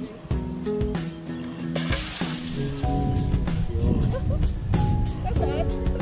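Compressed CO2 escaping in a sharp hiss for about a second as the cartridge's seal is punctured by the thumbtack in the PVC launcher's end cap, about two seconds in. Background music plays throughout.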